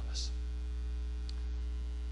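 Steady electrical mains hum with its evenly spaced overtones, carried on the church recording. The hiss of a spoken word ending comes right at the start, and there is a faint tick about a second and a half in.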